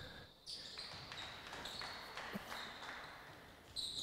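Faint basketball game sounds on a hardwood court: a ball bouncing a few times and short high sneaker squeaks.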